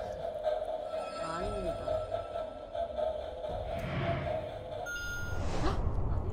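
Show soundtrack and sound effects: a steady held tone, a whoosh about four seconds in, then a short higher beep and another whoosh near the end, with brief bits of voice.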